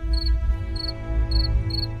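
Crickets chirping in short pulsed trills, about two a second, over a soft sustained background-music drone and a low rumble.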